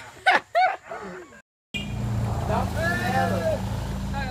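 Young voices shouting loudly, then a brief total dropout in the sound, after which a steady low rumble runs under further calls.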